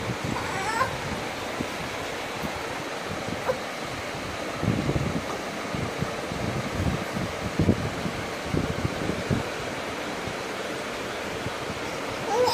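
A baby fussing with short, whimpering cries near the start, over a steady hiss; soft low knocks and rustles follow from about four seconds in.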